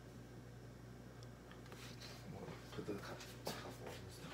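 Faint steady low hum, with a few short clicks, knocks and rustles in the second half as the phone is handled and moved.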